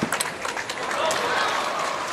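Last table tennis ball strikes of a rally, a few sharp clicks, then a crowd cheering and applauding the won point, swelling about a second in.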